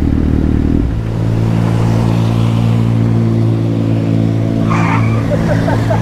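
Kawasaki Z800 inline-four engine running on a wet road, with tyre hiss. About a second in the engine note drops, then holds at a steady lower pitch as the bike slows to pull up.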